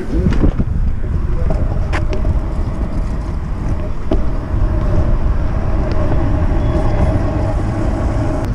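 Trick scooter rolling fast over asphalt: a loud, steady low rumble of the wheels, with wind buffeting the microphone. Two sharp clicks, about two and four seconds in, are the scooter jolting over bumps.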